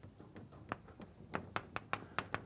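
Chalk tapping against a blackboard while writing: a single tap, then a quick run of sharp taps near the end.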